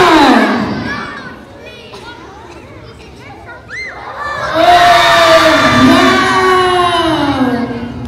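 A crowd of young children shouting together: a loud group shout at the start that fades within about a second and a half, scattered voices, then a second long, loud shout from about four and a half seconds in that falls in pitch.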